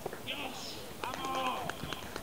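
Faint, indistinct men's voices talking and calling, with a few light clicks.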